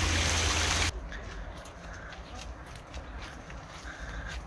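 Water running and splashing from a small garden waterfall into a pond, cutting off abruptly about a second in. After the cut it is much quieter: faint footsteps on a dirt path and a few faint bird calls.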